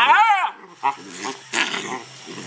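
A two-month-old puppy giving a bawl at the very start, one pitched cry about half a second long that rises and then falls in pitch. It is followed by two shorter, rougher growling sounds as it plays. This is the pup's early attempt at opening up.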